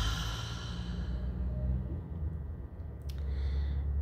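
A woman's deep exhale out through the mouth, a breathy sigh that fades away over the first second or so: the release of a deep breath in a breathing exercise. A single small click about three seconds in.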